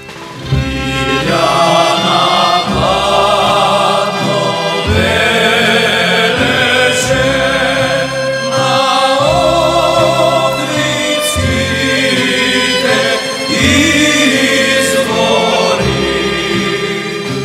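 A group of men singing a Macedonian folk song together, the voices coming in about a second in, over a small folk band of plucked lutes and violin.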